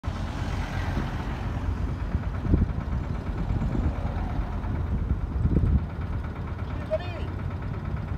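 City street traffic: a steady low engine rumble, with a car driving past close by and louder swells about two and a half and five and a half seconds in.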